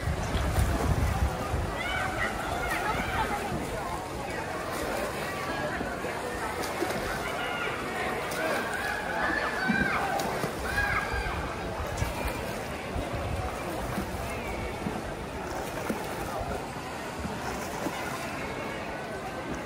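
Spectators' scattered shouts and calls over a steady wash of crowd noise and splashing pool water, with low wind rumble on the microphone at the start.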